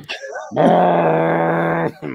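A man's voice holding one long, steady, gravelly note, like a drawn-out groan, for about a second and a half, starting about half a second in.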